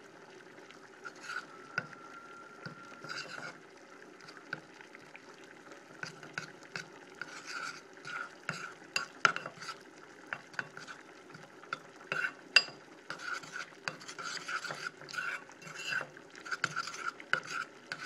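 Metal spoon stirring and scraping a melting mix of cornstarch, baking soda, cocoa butter and shea butter in a bowl set over a pot of boiling water, as a double boiler. The scrapes are irregular, with a sharper clink of spoon against bowl now and then.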